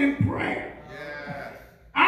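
A man preaching into a microphone with long, drawn-out syllables that trail off about a second and a half in.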